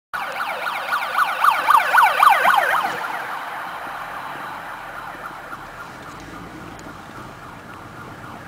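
Fire-service siren on a Renault Kangoo light operational vehicle on an emergency run, in a fast rising-and-falling yelp of about four cycles a second. It is loudest in the first three seconds, then fades as the vehicle pulls away ahead, heard from inside a following car.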